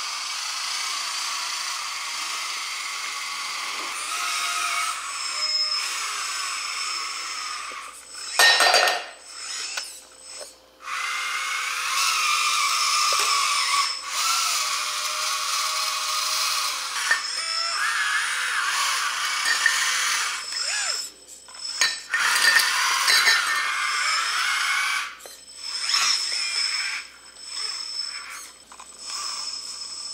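Electric motors of a metal RC tracked skid steer (LESU LT5) whining as it drives and works its hydraulic bucket, the pitch rising and falling with the throttle and stopping briefly a few times.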